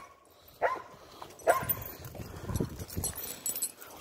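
Dogs at tug of war: two short yips falling in pitch, about half a second and a second and a half in, then lower rough noises and scuffling.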